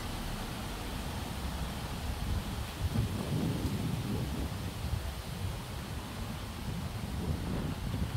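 A steady low rumble of outdoor background noise, swelling a little about three seconds in and again near the end.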